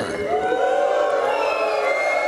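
Studio audience calling out and whooping together, many voices overlapping, building about a third of a second in and holding steady.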